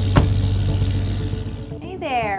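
Background music with sustained low notes that fade out, over a steady outdoor traffic-like hiss, with one sharp knock just after the start.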